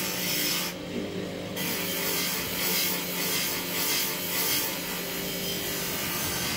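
Electric grinding wheel running with a steady hum while a knife blade is ground on it: a rasping grind that comes in repeated passes, with a short break about a second in.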